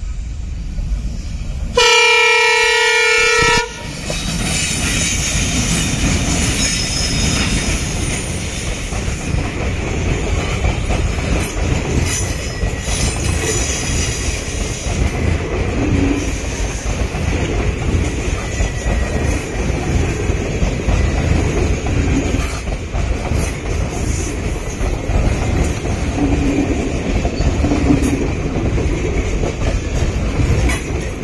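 Twin WDM3D diesel locomotives give one loud horn blast of about two seconds, a couple of seconds in. The locomotives and then the coaches rumble past close by, with the steady clickety-clack of wheels over rail joints.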